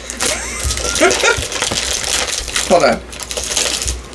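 Plastic blind-bag wrapper crinkling as it is pulled and torn open by hand, with short bits of talk.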